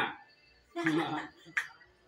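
A short laugh about a second in, followed by a light tap of a knife on a wooden cutting board.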